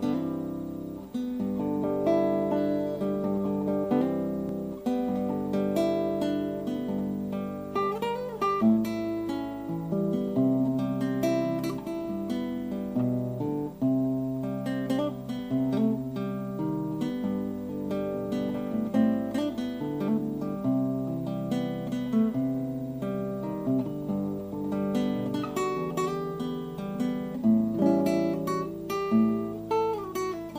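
Background music: acoustic guitar playing a melody of plucked notes and strummed chords.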